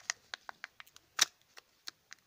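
Kinder egg plastic toy capsule and its wrapping being handled and opened by hand: a quick run of crisp plastic clicks and crackles, the loudest a little past one second in.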